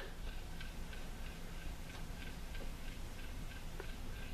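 Faint ticking, roughly two ticks a second and not quite even, over a low steady hiss with a faint high hum.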